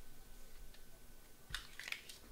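A stack of trading cards being handled, card sliding against card, with a brief burst of crisp rustling clicks about one and a half seconds in.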